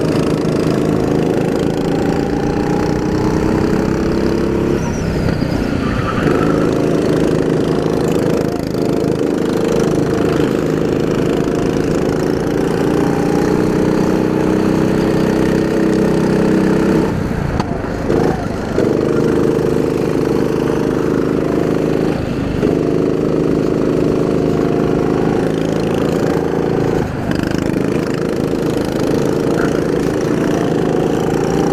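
Go-kart engine running hard at race pace, its note dropping off briefly several times as the kart slows for corners and climbing back under acceleration, the deepest drop a little past halfway.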